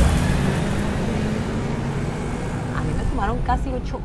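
Steady city street traffic noise, cars and a bus passing on a busy road; a woman's voice comes in about three seconds in.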